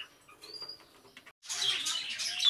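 Faint budgerigar chirps, including a short rising chirp about half a second in. A moment of dead silence comes just past a second in, and after it bird chirping sounds louder.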